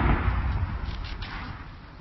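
Distant artillery blast: a sudden boom whose low rumble rolls on and slowly fades away.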